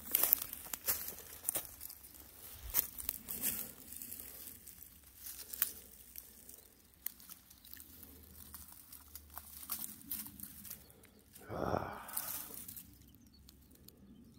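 Dry grass and dead leaves crunching and rustling under footsteps and a stick, with many small crackles and snaps, busiest in the first half. About eleven and a half seconds in comes a brief, louder rush of noise.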